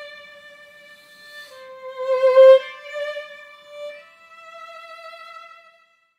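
Solo violin, a French instrument, played slowly in a few long held notes. A lower note swells loudest about two seconds in, then a higher note is held and fades away just before the end.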